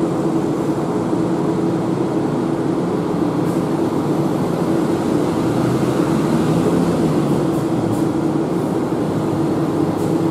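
A steady mechanical hum with an even drone from a stationary Hiroshima 1900-series tram (ex-Kyoto streetcar no. 1901) standing at the stop with its onboard equipment running.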